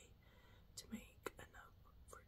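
Near silence: a woman's faint whispered speech under her breath, with a few small clicks.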